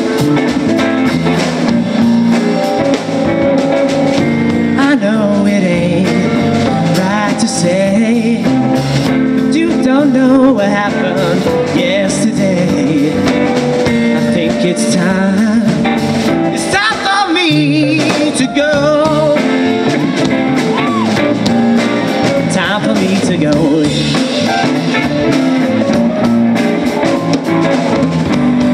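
Live rock band playing a song on electric guitars, drums and keyboard, loud and continuous.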